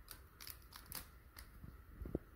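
A few faint, sharp clicks and light rustling from handling a jewelled metal hand ornament as it is fitted onto the figure's arm.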